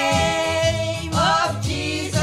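A woman singing a gospel worship song to electronic keyboard accompaniment. She holds one long note, then slides up into the next about a second in.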